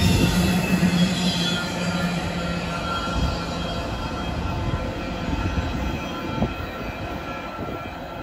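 Double-stack container well cars rolling past on steel rails, with thin, steady high-pitched wheel squeal. The rumble fades as the end of the train moves away, with one sharp knock about six seconds in.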